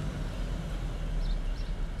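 A steady low hum in the background, with no other distinct sound.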